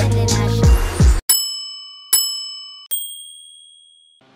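Hip-hop background music that cuts off abruptly about a second in, followed by three bell-like dings, each ringing and fading away. The last ding is higher-pitched and rings longest.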